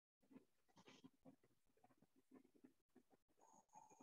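Near silence on the call's audio, with a few faint scattered ticks and a brief faint tone near the end.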